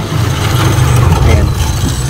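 Low engine rumble of a motor vehicle running nearby, swelling to its loudest about a second in and easing off toward the end.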